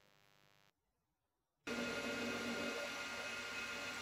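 Dead silence for about a second and a half, then a metal lathe running with a steady, quiet machine hum.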